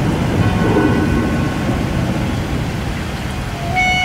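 A steady, dense low rumble with a hiss over it, like a thunder or storm sound effect in the mix. A held pitched note comes in near the end.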